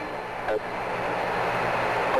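Radio static from the Apollo 11 air-to-ground link: a short click about half a second in, then a steady hiss over a low hum, the open channel just before the descent callouts.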